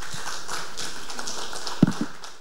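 Audience applauding, a steady patter of many hands clapping. A single low thump, the loudest sound, comes near the end.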